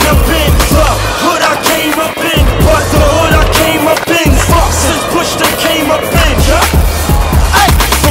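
Hip hop track with a heavy bass beat, mixed with skateboarding sounds: the board rolling, with a few sharp clacks of the board hitting the ground.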